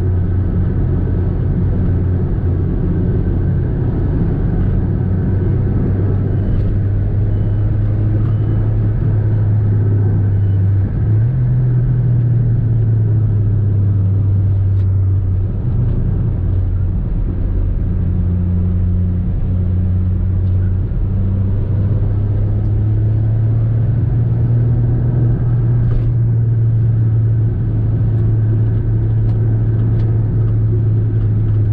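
Volkswagen car's engine and tyre noise heard from inside the cabin while cruising on the highway: a steady low drone whose pitch steps up slightly about eleven seconds in and holds there.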